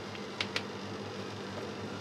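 Steady low machine hum with a light hiss in a small room, and two faint brief ticks about half a second in as a hand works sawdust into a tray of maggots.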